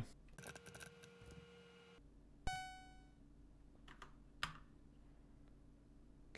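Faint computer keyboard key clicks, then a single electronic beep about two and a half seconds in that fades over about half a second, and two more key clicks near the end. The beep is an error signal: the program being saved and run has a bug.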